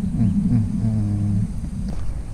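A man's low humming: a few short falling notes, then a held note, over a steady high-pitched insect drone. A brief click near the end.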